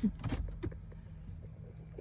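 Steady low hum of a car's running engine heard inside the cabin, with a few soft clicks in the first second.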